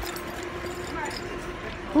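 A faint voice over a steady low hum, with no distinct events.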